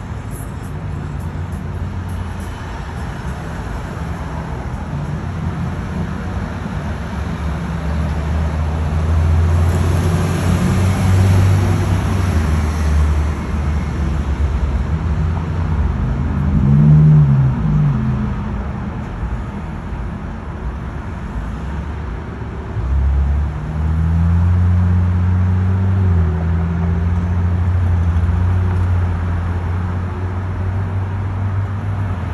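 Street traffic: a steady low hum of car engines, with a louder passing vehicle about a third of the way in. An engine note rises and falls just past halfway, and another engine gets suddenly louder about three quarters of the way through.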